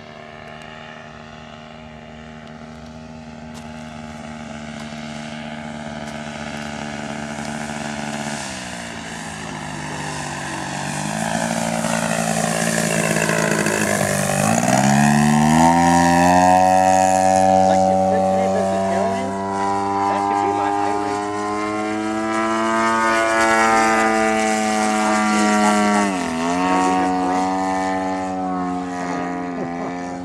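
A radio-controlled Extra 300L's 111cc gasoline engine and propeller in flight, a steady drone that grows louder as the plane comes near and peaks about halfway through. Its pitch falls and recovers about a third of the way in, drops sharply and climbs back around the middle, and dips briefly again near the end.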